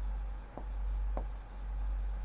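Writing strokes on a board as a word is written, scratchy and uneven with a couple of small ticks, over a steady low hum.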